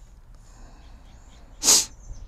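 A person's single short, sharp burst of breath, sneeze-like, about a second and a half in; it is the loudest sound here. Faint high chirps sound throughout in the background.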